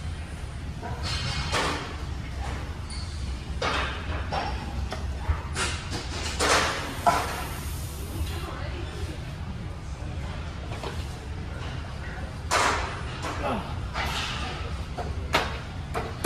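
Loud breaths and grunts of a lifter working through a heavy barbell back squat set, coming in separate short bursts, with a few thuds. A steady low hum runs underneath.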